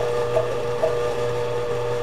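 Electric stand mixer running steadily with its paddle attachment, beating a wet, sticky brioche dough as flour is added, with a faint regular beat about twice a second.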